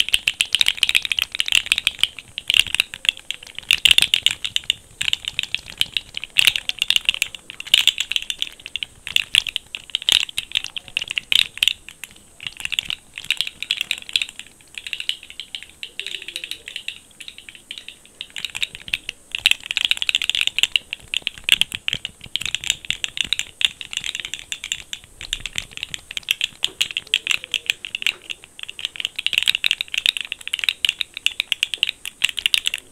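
Rainbow segmented plastic fidget toy wiggled close to a microphone, its jointed segments clicking and rattling in quick, continuous runs that ease off briefly a little past halfway.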